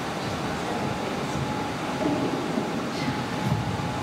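Steady room noise in a hall during a pause: an even rumble and hiss with a faint steady hum, and a few faint low rustles.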